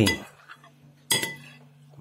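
A single sharp clink of tableware about a second in, ringing briefly, over a faint steady low hum.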